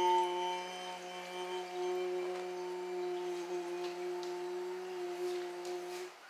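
A single bell-like ringing tone, struck just before and holding on steadily with slowly fading overtones over a faint low hum, cut off suddenly at the end.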